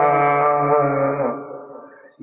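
A man's voice chanting a long, held melodic line in the sung style of a Bangla waz sermon, the note fading away over the second half.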